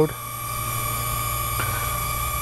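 Cheerson CX-OF toy quadcopter in flight, its small motors and propellers giving a steady, even-pitched whine.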